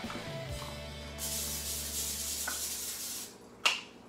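PAM cooking spray hissing from its aerosol can onto a foil-lined baking sheet: one continuous spray of about two seconds, starting about a second in. It is followed by a short knock near the end.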